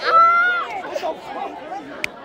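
Young men's voices: a loud drawn-out shout in the first half second, then several people chattering over each other.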